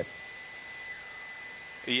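Faint steady hiss with a thin, constant high-pitched tone under it: the background noise of a live broadcast audio feed in a pause between words. A man's voice says "yep" at the very end.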